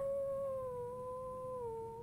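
A woman's high, closed-mouth whine held for about two seconds, dipping slightly in pitch.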